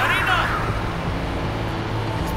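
A car engine's steady low rumble on a street, with a woman's voice heard briefly near the start.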